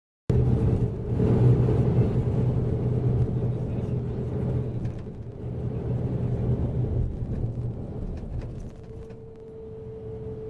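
Bus engine and road noise heard from inside the passenger cabin while driving: a steady drone that eases off somewhat in the second half. Near the end a faint whine sets in, falling slightly in pitch.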